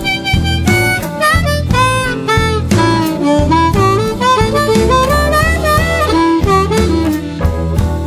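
Blues diatonic harmonica solo, its notes bending and sliding in pitch, over a band backing of bass and drums.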